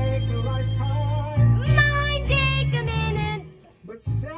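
A young girl singing held, wavering notes over musical accompaniment with a steady bass; the music stops about three and a half seconds in.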